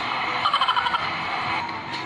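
Vlog audio through a phone's speaker: steady supermarket background noise, with a short high-pitched wavering voice-like sound about half a second in.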